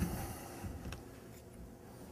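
Two faint, light clicks of wrenches on the metal valve body, one at the start and one about a second in, over quiet room tone.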